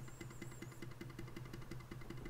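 Faint background room tone: a steady low hum with a fast, even, faint ticking, about eight to ten ticks a second.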